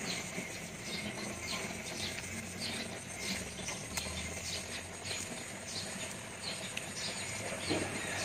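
A person chewing fresh raw vegetables and herbs with the mouth closed. Small wet clicks and crunches come irregularly, about two to three a second.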